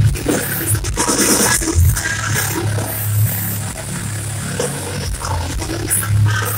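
Live heavy metal band playing loudly through a concert PA, heard from the audience: distorted guitars and drums over a heavy, steady bass.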